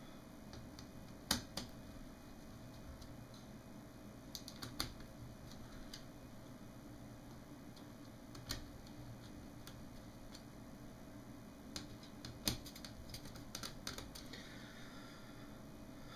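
Screwdriver tightening screws into the metal chassis of an opened LCD monitor: scattered small clicks and taps, a few seconds apart and bunched near the end, over a low steady hum.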